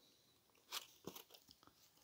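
Near silence with a few faint, short clicks and rustles in the middle: fingers picking chips out of a polystyrene takeaway box and a mouthful being eaten.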